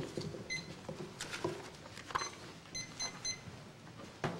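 Paper handling and a few light knocks at a wooden podium as a man gathers his papers and steps away. Five short, high electronic beeps sound through it, the last three in quick succession near the end.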